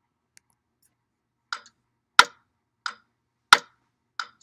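Clock ticking in a tick-tock rhythm, soft and loud strokes alternating, about three strokes every two seconds, starting about a second and a half in.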